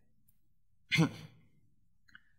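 A man's single short sigh about a second in.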